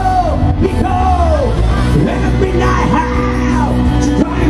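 A live rock band playing loud through a PA, with a male lead singer singing and yelling into a microphone over the band.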